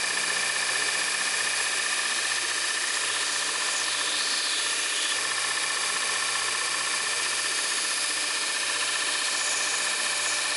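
Bench belt sander running steadily with a high whine, while a metal spoon is held against the moving belt and ground.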